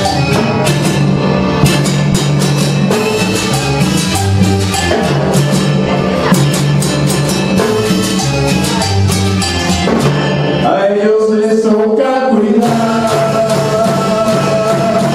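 Live cumbia band playing: electric bass, keyboard, congas and timbales driving a steady dance groove. Near 11 s the bass and low end drop out briefly, leaving the higher instruments, then the full band comes back in.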